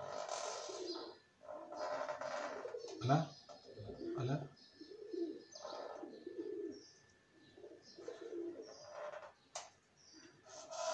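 Soft, low bird cooing, repeated several times.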